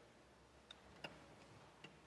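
Near silence: faint room tone with three small, quiet clicks spread across the two seconds.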